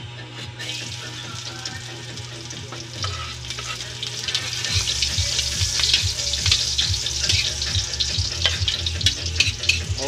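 Chopped garlic frying in hot oil in a wok, the sizzle building from about three seconds in and growing loud about halfway through, with short scrapes and taps of stirring against the pan. This is the start of sautéing the garlic.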